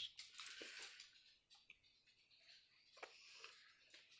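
Near silence, with a few faint soft clicks and rustles in the first second and two short ticks about three seconds in.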